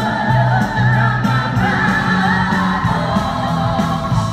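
Live pop band playing through an arena sound system: a male lead voice sings over bass, drums and keyboards, with backing voices joining in.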